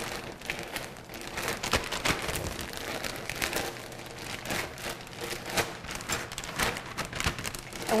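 Clear plastic zip-top bag of shredded cheese, flour and spices being shaken by hand: continuous crinkling of the plastic with the irregular patter of the cheese shreds tumbling inside.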